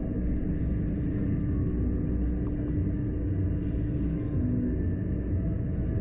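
Steady low mechanical rumble with a constant hum, typical of a slingshot ride's machinery drawing the cables taut before launch.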